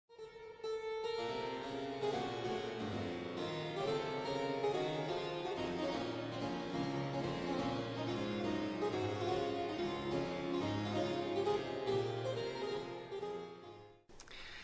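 Solo harpsichord playing a continuous passage of many quick notes, fading out near the end.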